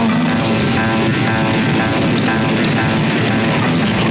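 Propeller engine of a light aircraft running steadily, mixed with music.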